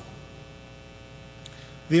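Steady electrical mains hum with many overtones in the microphone's sound system, heard in a pause between speech, with a faint click shortly before a man's voice resumes at the very end.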